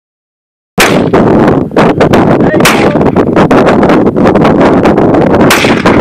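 AR-15 rifle shots fired in slow succession, the sharpest about two seconds apart, over steady loud noise from an overloaded recording.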